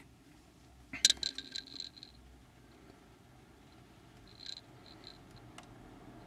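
Light handling clicks and taps on phones and camera held in the hand: a cluster about a second in and a few fainter ones a little past the middle, over a faint low rumble.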